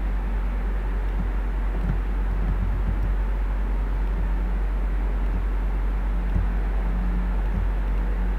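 Steady background noise of the recording: a constant low hum under an even hiss, with no distinct events.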